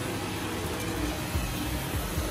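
A vacuum cleaner running steadily, with a low hum under an even rushing noise.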